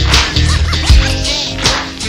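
Slowed-down, chopped-and-screwed hip hop beat with deep bass and no rapping, punctuated by two sharp, cracking percussion hits, one near the start and one about one and a half seconds in.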